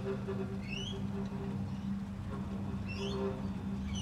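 A small bird chirping twice, short rising chirps, over a steady low hum.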